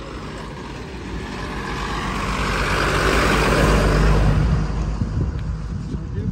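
A motor vehicle passes close by: engine and road noise swells to a peak about three and a half seconds in, then fades.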